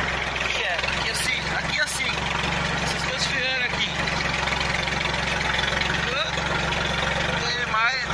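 Yanmar 1145 tractor's diesel engine running steadily under load in a low gear, pulling a five-shank subsoiler through the soil, heard from the driver's seat.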